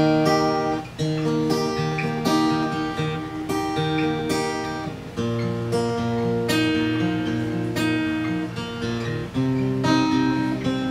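Solo acoustic guitar playing picked chords, the notes sounding one after another in a repeating pattern, with a chord change about five seconds in and another near the end.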